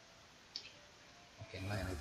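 A single short computer-mouse click about half a second in, over quiet room tone; a man's voice starts near the end.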